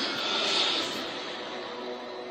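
A rushing whoosh sound effect for an intro animation. It swells over the first half-second and fades, and sustained musical tones come in underneath.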